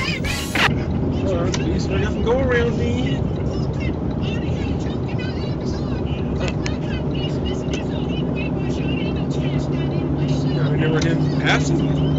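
Steady engine and road drone inside a truck cab at highway speed, growing a little stronger near the end, with faint talk playing underneath.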